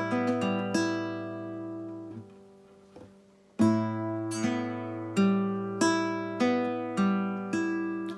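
Classical nylon-string guitar played on open strings in a slow finger-picked exercise: the fifth and first strings are plucked together, then the second and third strings one at a time. The first notes ring out and fade about two seconds in. After a pause of about a second and a half, the pattern starts again with the two outer strings plucked together, followed by single notes about every 0.6 s.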